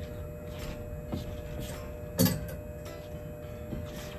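Clothes hangers clicking against a clothing rail: a few light clicks and one sharp clack about halfway through, as a garment is hung back on the rack and the next one taken.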